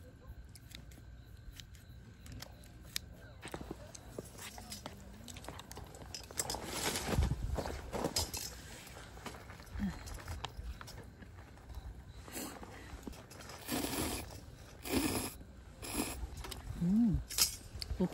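Eating sounds at a table: light clicks of tongs and chopsticks on a plate, chewing, and several short crinkling bursts as the foil-paper lid of an instant cup noodle is peeled and folded back.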